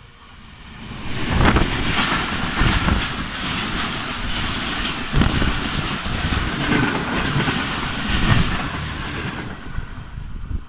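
An oncoming diesel-hauled passenger train passing close on the adjacent track: the locomotive and then its coaches rush by with the wheels clattering over the rails. The noise builds about a second in, holds steady and drops away just before the end as the last coach clears.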